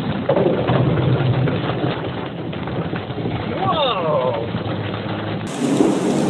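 Thunder from a very close lightning strike: a sudden boom and rumble over steady rain. About four seconds in, a person lets out a short shout that falls in pitch.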